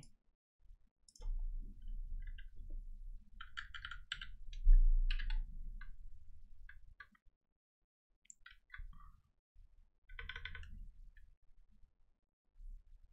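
Computer keyboard keys being pressed in scattered, irregular clicks, with a short run of clicks a little after ten seconds in. A low rumble sits under the first half, with one loud low thump about five seconds in.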